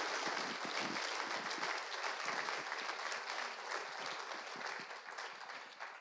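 Audience applauding: a dense, even patter of many hands clapping that fades gradually toward the end.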